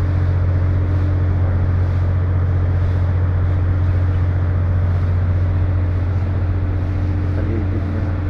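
Loud, steady low machine hum, unchanging throughout, with a faint higher tone riding over it.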